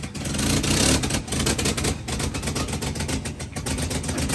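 1952 Chevrolet truck's inline-six engine running with a rapid, even beat, loudest and fastest about a second in, then settling to a steady run.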